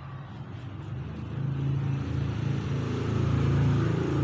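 A motor vehicle's engine running with a steady low hum, growing louder from about a second in.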